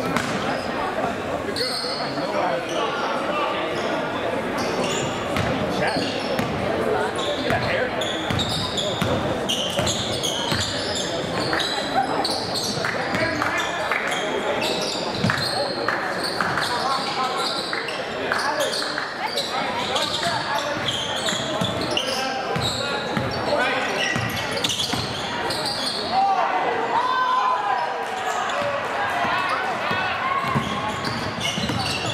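Basketball being dribbled on a hardwood gym floor, with repeated sharp bounces, under players' and spectators' voices calling out, all echoing in a large gymnasium.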